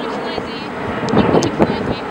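Indistinct talking, with gusts of wind buffeting the microphone in the second half.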